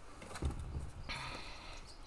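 Tarot cards being handled: a soft knock about half a second in, then a short papery rustle as the cards are shuffled.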